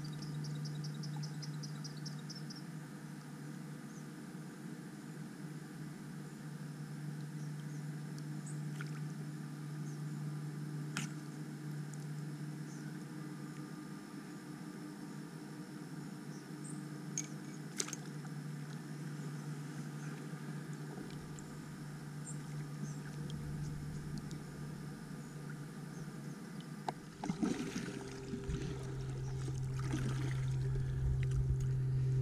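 Quiet marsh ambience from a drifting kayak: a steady low hum, a songbird's rapid high trill in the first couple of seconds and a few faint chirps and clicks. Near the end come kayak paddle strokes splashing in the water.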